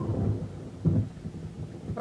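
Thunder rumbling, a low rolling sound that swells at the start and again about a second in, as a storm approaches.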